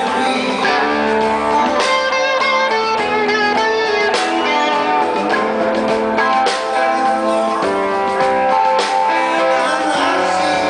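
Live rock band playing at full volume, led by electric guitars over drums and bass.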